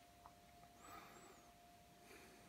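Near silence: faint brushing of tarot cards being slid across a velvet cloth about a second in, over a faint steady tone.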